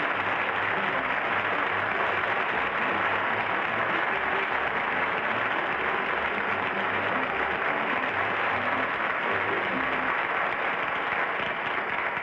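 Studio audience applauding steadily, with music playing underneath.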